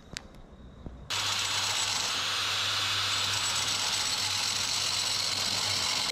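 A few faint plastic clicks, then from about a second in a hand-held angle grinder running steadily, cutting a seized 3D-printed pull-start pulley in half to get it out.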